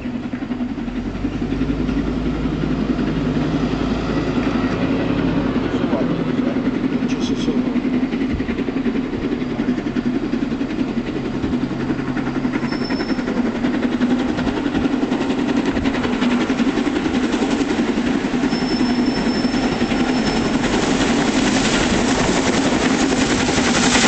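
LMS Princess Coronation Class steam locomotive 46233 'Duchess of Sutherland' working a passenger train, running steadily and growing louder as it approaches. Faint high-pitched squeals are heard briefly about halfway through and again a few seconds later.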